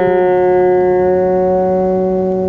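Acoustic guitar's D string, fretted at the fifth fret, and open G string ringing together on nearly the same G note after being plucked, slowly fading. The open G string is slightly flat, so the two are not quite in tune with each other.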